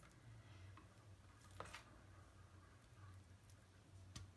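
Near silence: room tone with a low steady hum, and a couple of faint taps about a second and a half in.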